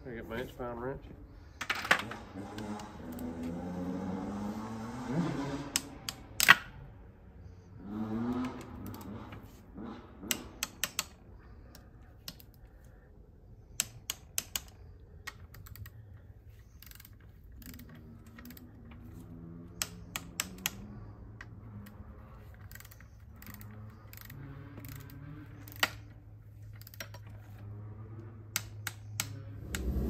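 Hand ratchet and torque wrench making scattered sharp clicks as the bolts of an oil cooler cover are tightened down, with quiet voices in the background.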